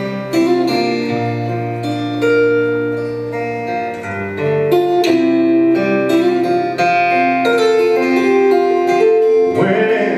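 Solo acoustic guitar playing a song's instrumental opening, picked and strummed chords ringing on one after another. A man's singing voice comes in right at the end.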